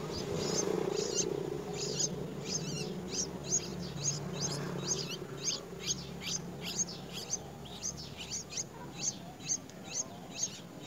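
Bulbul nestlings begging with short, high chirps, about two a second, as the adult feeds them larvae at the nest. The chirps run over a steady low hum.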